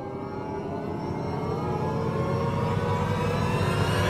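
An edited-in suspense riser sound effect, a rising whoosh that climbs in pitch and grows steadily louder, building up to a reveal.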